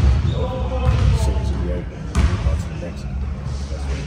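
Basketballs bouncing on a gym court in a large room, with two sharp bounces about two seconds apart, under faint voices.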